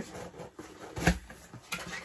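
A cardboard shipping box being opened and handled by hand: quiet rustling and scraping, with a few soft knocks, the clearest about halfway through.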